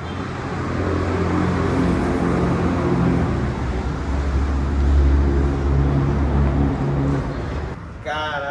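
A fabric car cover rustling as it is dragged off a car, over a low droning hum that shifts in pitch and is loudest a little past the middle.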